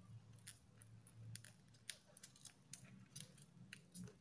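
Faint, scattered crackles and light taps of folded paper being handled as fingers press the flaps of a paper krathong into place.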